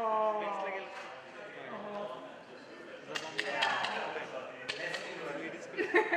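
People talking in a large hall, clearest in the first second or so and then a softer murmur, with a few sharp knocks or clicks in the second half.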